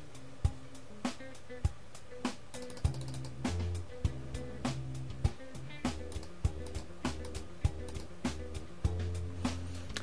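A Latin drum mix sample playing back in Ableton Live at 100 BPM. A drum hit lands on every beat, about 0.6 s apart, and a bass line comes in about three seconds in.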